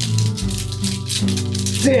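A pair of maracas shaken in a quick run of rattling strokes for about a second and a half, over background music.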